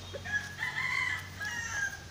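A rooster crowing once, a call of several linked notes lasting about a second and a half.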